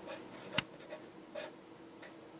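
Felt-tip marker writing on paper: faint, short scratchy strokes, with a sharper tap about half a second in.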